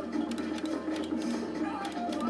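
Skill game machine's electronic game audio during fast free bonus spins: a run of synthesized notes with rapid ticking from the spinning reels.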